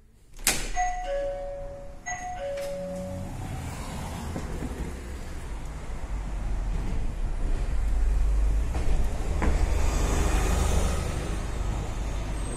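A shop door opens with a click, and an electronic entry chime sounds a descending two-note ding-dong twice. Street traffic follows, with a city bus approaching and the low rumble growing louder over the second half.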